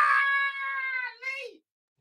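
A man's high-pitched squeal of laughter, one long held note that drops away after about a second, followed by a short falling squeak.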